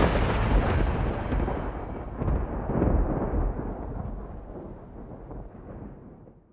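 A deep rumbling sound effect in the soundtrack, dying away slowly after the music stops, with two brief swells about two and three seconds in before it fades out.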